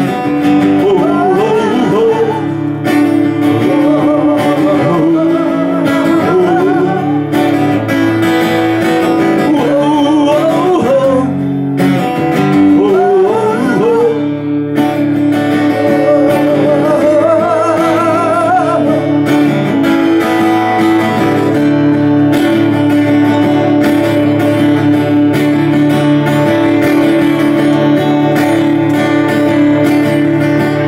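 Acoustic guitar strummed steadily, with a voice singing a slow melody with vibrato over about the first two-thirds, then the guitar carrying on alone.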